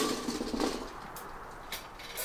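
Glowing charcoal briquettes poured from a chimney starter into a barrel grill's metal charcoal basket: a loud rushing clatter that tails off over the first second, with a few scattered clinks and crackles after.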